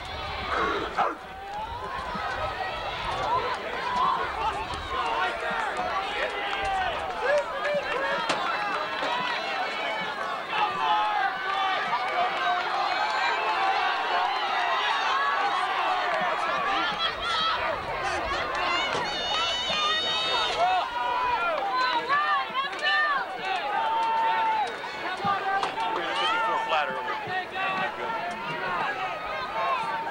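Crowd of spectators in the stands shouting and cheering during a track race, many voices overlapping, with a burst of higher-pitched yelling about two-thirds of the way through.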